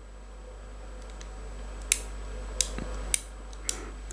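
Small metallic clicks from the exposed lockwork of a Manurhin MR73 revolver as the trigger and its wheeled reset slider are worked by hand. Four sharp clicks come in the second half, a little over half a second apart, over a low steady hum.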